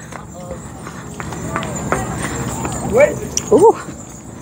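Footsteps on a concrete sidewalk with the light clinking of the metal coin ornaments on a Hmong costume vest as its wearer walks. Short bits of voices come about three seconds in.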